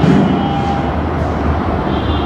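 A steady low mechanical rumble, with no speech over it.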